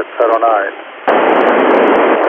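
A voice coming through the SO-50 amateur satellite's FM downlink on an Icom IC-9700 receiver. About a second in, the voice gives way to loud, steady FM static hiss from the receiver.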